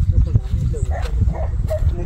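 Wind rumbling on the microphone, with a man's voice speaking in short bits over it.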